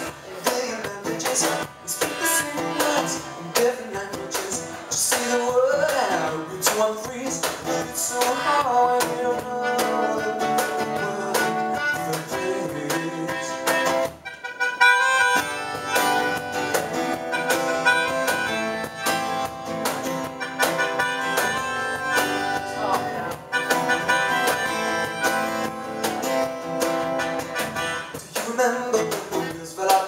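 Live acoustic pop-rock instrumental passage: strummed acoustic guitar keeping a steady beat under sustained reedy melodica notes. The music thins out briefly about 14 s in, then the melodica carries on.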